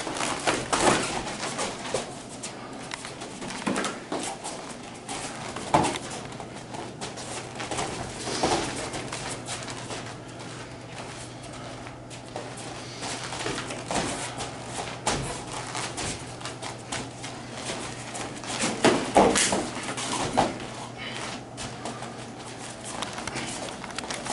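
Light-contact kung fu sparring: irregular slaps and thuds of strikes, blocks and footwork on the mats, with louder hits about six seconds in and around nineteen seconds in, over a steady low hum.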